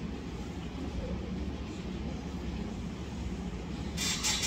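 Steady low hum and rumble of room background noise, with no speech and no distinct events.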